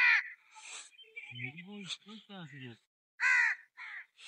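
A bird calling outdoors: two short, loud calls, one at the very start and another about three seconds in. Faint talking comes in between.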